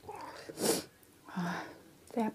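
Close-miked breath sounds from a person: a sharp, hissy burst of breath about two-thirds of a second in, then a softer breathy sound with a brief low hum about a second later.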